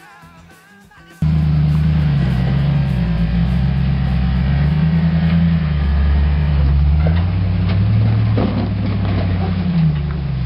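A Land Rover Defender's engine running at low revs, its pitch rising and falling slowly as the truck crawls over sandstone ledges. It cuts in suddenly about a second in, with a couple of knocks later on.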